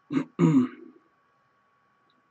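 A man clearing his throat, in two short bursts within the first second.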